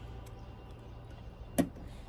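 A single sharp click about one and a half seconds in, over a low steady hum.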